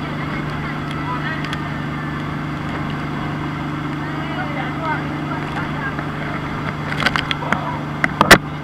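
A small tour boat's engine runs steadily at speed under the sound of water and passengers' voices. Near the end come several sharp slaps and splashes as the boat hits waves and spray comes over.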